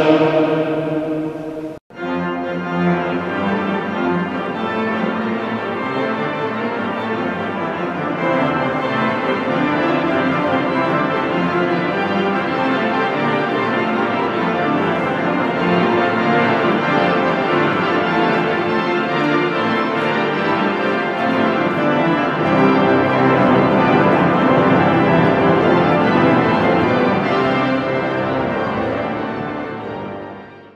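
A sung chant that breaks off abruptly at a cut about two seconds in, followed by organ music playing steadily and fading out near the end.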